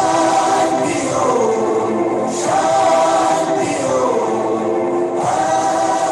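Meditation music with a choir singing long held notes, in a phrase that begins again about every three seconds and falls in pitch toward its end.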